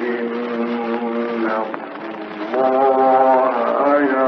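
A man chanting the Quran in a melodic recitation, holding long ornamented notes: one held note at the start, a softer dip, then another long rising phrase. The recording is an old, historic one.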